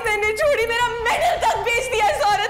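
A woman's high, wavering wordless voice, drawn out and bending in pitch, with a sharp breath about a second in. Soft steady music plays underneath.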